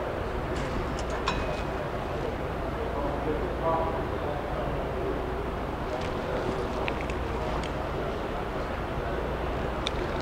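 Light metallic clicks and ticks from small tackle hardware being handled: a stainless gate clip, pulleys and crimping pliers closing on a crimp sleeve. The clicks come in two small clusters, near the start and again about six to seven and a half seconds in, over a steady low room hum.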